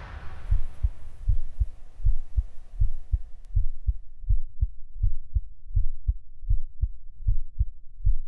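Heartbeat sound effect: deep, evenly spaced low thumps, about three a second. Near the start they sit under the fading reverberant tail of a preceding hit.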